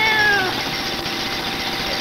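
Steady, really loud machine noise, an even rush with no clear pitch, from the digging machine switched on in the sketch. A drawn-out voiced sound trails off over it in the first half second.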